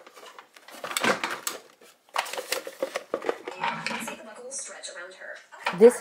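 Hard plastic parts of a toy plane's cockpit piece clicking and clattering as they are handled and twisted, with a burst of clatter partway through.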